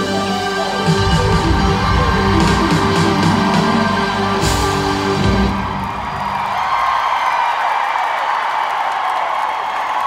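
Live band holding the closing chords of a pop ballad, the music stopping about five and a half seconds in, followed by an arena crowd cheering.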